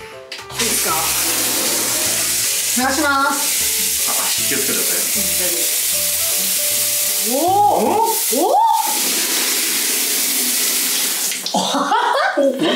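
Handheld shower head spraying water onto a bathroom mirror, a steady hiss that starts about half a second in and cuts off near the end, rinsing the acid cleaner off the scrubbed glass.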